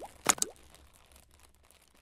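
Animated logo sound effects: a sharp click, then a short rising pop about a third of a second in, fading away to near silence.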